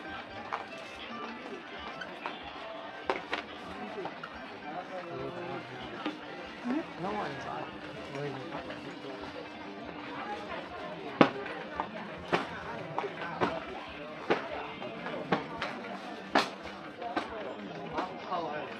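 Indoor shopping-mall ambience: indistinct chatter of passing shoppers with music playing in the background. In the second half, a series of sharp clicks comes about once a second.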